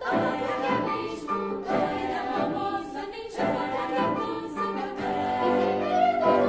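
Children's choir singing in Portuguese, accompanied by a small chamber ensemble of woodwinds, horn, guitar and piano, in short phrases with brief pauses between them.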